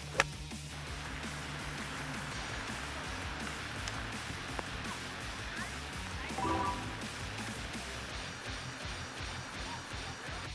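A golf iron striking the ball on a fairway shot: one sharp crack just after the start. Background music plays under it for the rest.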